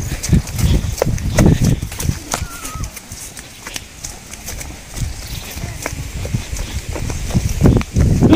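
Footsteps of people running on a grassy dirt path: quick, uneven thuds that thin out in the middle and pick up again toward the end.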